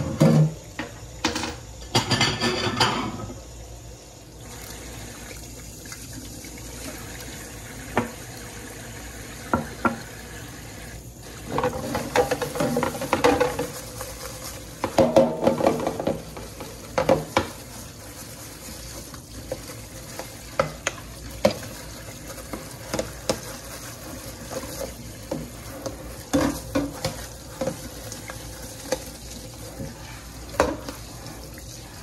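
Kitchen faucet running into a stainless steel sink while dishes are washed by hand, with clinks and knocks of dishes and a plastic container being handled, scrubbed and rinsed. The clatter is busiest about two seconds in and again from about eleven to seventeen seconds.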